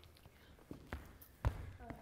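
A few footsteps on a dance-studio floor: three or four short, soft knocks, the loudest about one and a half seconds in.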